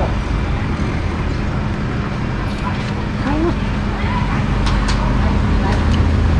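Street traffic noise with a steady low hum underneath, a brief faint voice about three seconds in, and a few faint clicks near the end.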